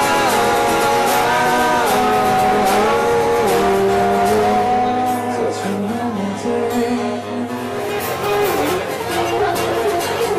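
Two acoustic guitars strumming with sung vocals holding long notes that glide from pitch to pitch, played live as an acoustic duo. The music thins a little past the middle.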